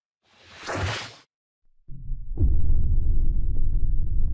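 A whoosh transition sound effect swells up and cuts off about a second in. About two seconds in, a loud low rumbling drone comes in with a falling swoop and keeps going.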